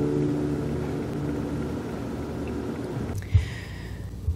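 The last chord on a nylon-string classical guitar rings out and fades away over about three seconds. It gives way to faint room tone with a soft low thump.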